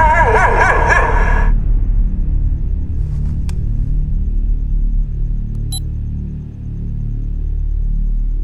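Horror-film soundtrack. A high, wavering, howl-like cry cuts off about a second and a half in. A low, pulsing rumbling drone follows, broken by two sharp clicks.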